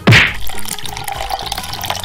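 A quick falling swoop at the start, then liquid pouring steadily through a funnel into a plastic bottle.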